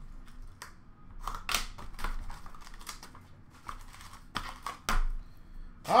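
Irregular light taps, clicks and rustles of sealed trading-card boxes and packs being handled, picked up and set down.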